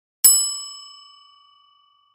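A single bell ding sound effect, struck once and ringing with several clear tones that fade out over about a second and a half: the notification-bell chime of a subscribe-button animation.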